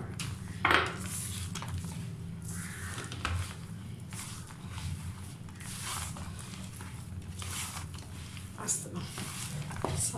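A hand squeezing and mixing mashed boiled potato with maida flour in a stainless steel bowl: irregular soft rubbing and squishing strokes, the loudest one about a second in, over a steady low hum.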